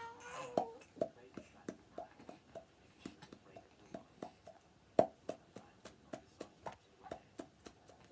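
Finger-in-cheek mouth pops: a quick series of sharp, hollow pops at changing pitches, about two to three a second, made to pick out a tune. The loudest pop comes about five seconds in.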